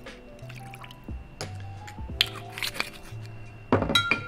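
Peach liqueur poured from a bottle into a metal jigger, a soft liquid trickle with a few small clicks of glass and metal and a sharper knock near the end. Chillhop background music with a steady bass line plays throughout.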